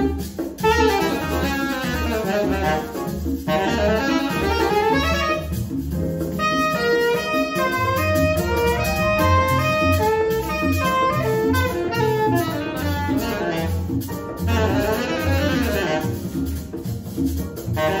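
A jazz quintet playing live, with a saxophone lead over grand piano, plucked upright bass and congas.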